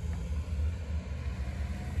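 Low, uneven rumble of outdoor background noise, with no distinct event standing out.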